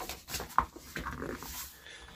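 A picture-book page being turned by hand: irregular paper rustling and brushing as the page flips over and is laid flat.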